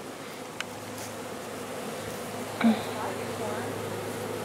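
A honeybee swarm buzzing steadily at close range, with a single brief knock about two and a half seconds in.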